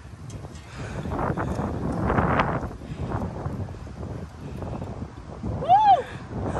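Wind buffeting the microphone in uneven gusts, loudest in the first half. A short voiced exclamation comes just before the end.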